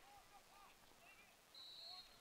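Near silence. Faint, distant shouts carry from the lacrosse field, with a brief, thin, steady high tone near the end.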